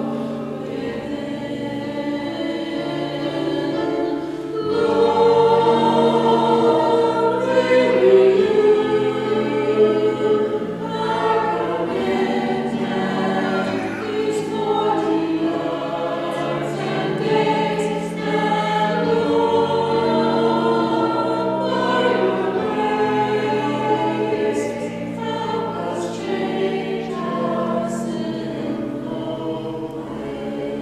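A group of voices singing a hymn together in held, stepping notes, with sustained low bass notes underneath; it grows louder about five seconds in.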